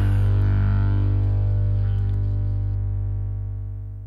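The final chord of a 1960s-style garage-rock song ringing out after the band stops: a low sustained chord slowly fading away.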